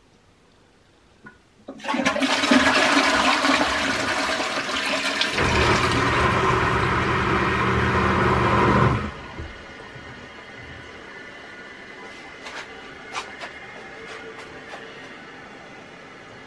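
Upflush toilet being flushed: water rushes into the bowl about two seconds in, and a few seconds later the macerator grinder pump starts with a low hum and runs until it cuts off abruptly about nine seconds in. A quieter steady hiss of the tank refilling carries on after it.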